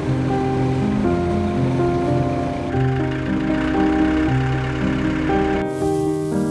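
Background music of held notes that change every half second or so, over a steady rushing noise that cuts out near the end while the music carries on.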